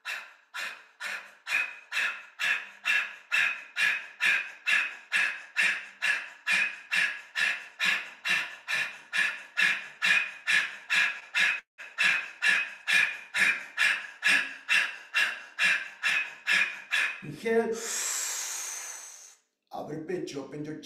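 A man's rapid, forceful exhalations through the mouth, pumped from the diaphragm, about three a second, as part of a yogic breathing exercise. Near the end the strokes stop and give way to one long breathy exhale of about two seconds.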